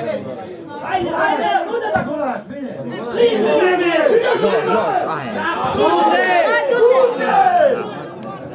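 Spectators chattering close by, several voices talking over one another, louder from about three seconds in.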